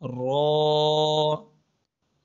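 A man's voice reciting the Arabic letter name "ra" in a long, chant-like drawn-out tone on one steady pitch. It lasts about a second and a half and then stops.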